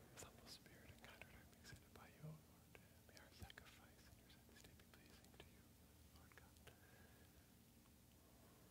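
Near silence with a man's faint whispered prayer and a few small clicks. This is the priest's quiet prayer said under his breath at the preparation of the gifts.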